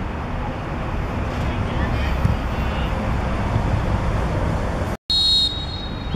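Distant shouts of youth football players and spectators over a steady low rumble. About five seconds in, the sound drops out for a moment at a cut, then comes a short, shrill referee's whistle blast.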